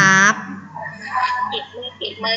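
A spoken word ending, then faint, broken background voices and room noise coming through a video call.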